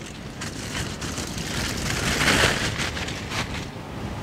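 Aluminium foil crinkling and crackling as it is peeled open and pulled away, loudest about halfway through.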